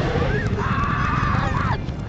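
A high-pitched human cry played in reverse, held for about a second, its pitch rising at the start and bending down at the end, over a low rumble.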